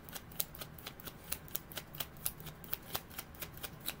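A tarot deck being shuffled by hand, overhand style: packets of cards dropped and slapped from one hand onto the other, making a quick irregular run of soft card clicks, several a second.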